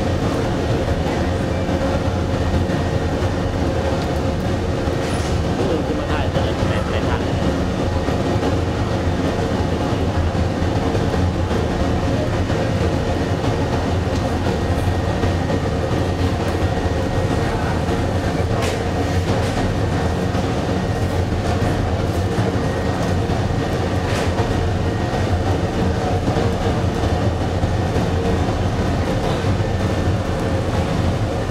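Fire in a crematorium furnace burning with a steady low rumble, with a few faint crackles.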